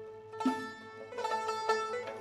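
Tajik Shashmaqom ensemble playing an instrumental mukhammas: plucked long-necked lutes and the chang's struck strings over held notes, in a soft passage with a plucked note about half a second in and a quick run of notes in the second half.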